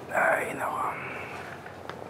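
A breathy, whispered vocal sound, like an audible exhale or whisper, lasting about a second just at the start; then only quiet room background.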